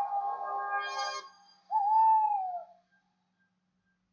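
Eerie music cue from a story recording. Held notes fade out in the first second or so. Then comes one long hooting tone, like an owl, which rises a little and falls, ending about three seconds in.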